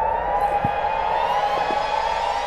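Police siren sounding, a repeated rising sweep about twice a second.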